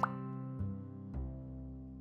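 A short upward-sweeping 'plop' sound effect at the start, then soft background music with a couple of gentle notes, slowly fading.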